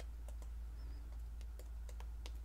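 Faint, irregular small clicks and ticks as an acrylic-poured canvas is tilted by hand and paint drips off its edge, over a steady low hum.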